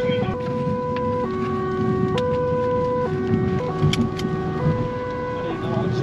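Police car's two-tone siren, switching back and forth between a high and a low note about once a second, heard from inside the car's cabin while it runs to an urgent call.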